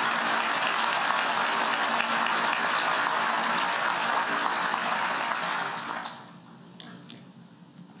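Large audience applauding, steady, then dying away about six seconds in.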